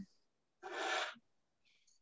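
One audible breath drawn near the microphone, lasting about half a second, with a faint mouth click just before speech resumes.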